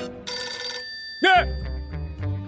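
Telephone bell ringing once, a short, bright ring lasting about half a second, over background music. About a second later comes a short, loud sliding sound, and low steady music follows.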